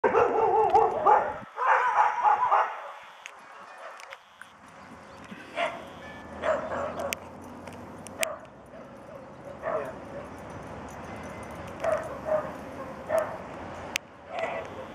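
Dogs barking as they play: a loud run of rapid barks in the first three seconds, then single barks and yips every second or two.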